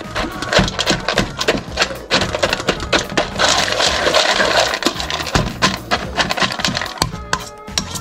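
A fork stirring and scraping through kibble and canned meat in a stainless steel bowl: quick, irregular clinks of metal on metal and the rattle of dry dog food against the bowl.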